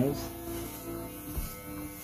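Corded electric hair clippers buzzing steadily as they are run through short hair.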